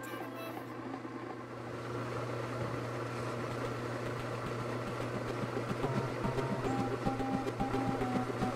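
Steady low electric hum, plausibly the Delta ShopMaster utility sharpener's motor running, under background music with scattered held notes.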